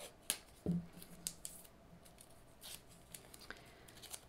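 Washi tape being pulled off its roll and torn by hand: a few faint, scattered crackles and snaps.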